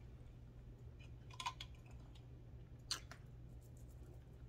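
Faint mouth sounds of sipping a canned drink through a straw: a few soft clicks about one and a half seconds in and a single sharper click near three seconds, over a low steady hum.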